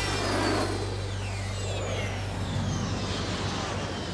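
Jet aircraft flying past overhead: a noisy roar with high whines sliding down in pitch as it passes, over a steady low hum.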